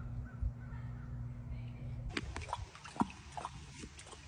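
Black jaguar lapping water from a tank: a quick, irregular run of wet clicks and splashes that starts about halfway through, after a steady low hum cuts off.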